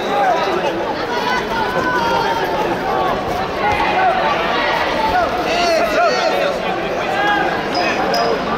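Crowd hubbub in a big sports hall: many voices talking and shouting at once, with no single voice standing out.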